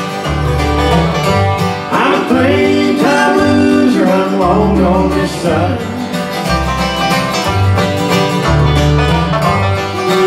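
Bluegrass band playing live: fiddle, acoustic guitar, five-string banjo and upright bass, with the bass keeping steady low notes underneath.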